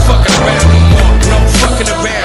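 A hip hop backing track with deep stepping bass notes and sharp drum hits, at an instrumental gap between rapped verses. Under it, skateboard wheels roll on concrete.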